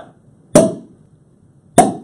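Two sharp knocks about a second and a quarter apart, each with a brief ringing decay.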